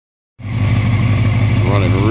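Honda CBR600 F4i inline-four engine idling steadily, starting just under half a second in. It is running really smooth after six years sitting unrun, still burning off the last of its smoke.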